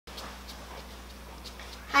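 Low room tone with a steady electrical hum and a few faint soft ticks; a woman's voice begins right at the end.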